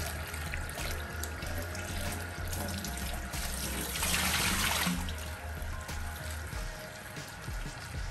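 Kitchen tap running into a bowl of cut potatoes as they are rinsed and stirred by hand in a stainless steel sink, with a louder rush of water for about a second, four seconds in. Background music plays under it.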